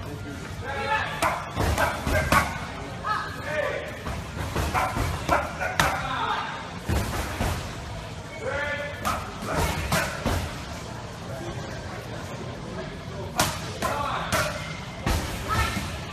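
Punches smacking into focus mitts, sharp slaps at irregular intervals, several close together, over indistinct voices talking.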